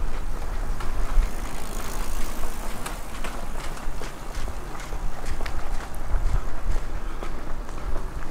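Footsteps of someone walking on block paving, with short clicks and low thumps at a walking pace over the steady background noise of a quiet town lane.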